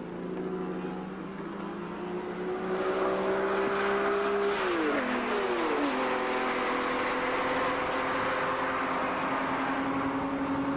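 Two carburetted Ferrari Berlinetta Boxer flat-12 race cars (a 512 BB and a 365 GT4 BB) under hard acceleration. Their engine note climbs as they approach, then they pass close one after the other about halfway through, each pitch dropping sharply as it goes by, before running away down the straight.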